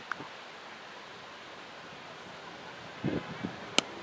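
Faint open-air wind, then near the end a single sharp crack of a cricket bat striking the ball.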